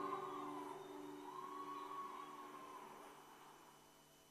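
Acoustic guitar accompaniment for malambo, its last chord ringing out and fading steadily until nearly silent.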